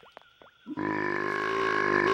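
A cartoon dinosaur's long, steady grunt, starting about three-quarters of a second in and held at one pitch.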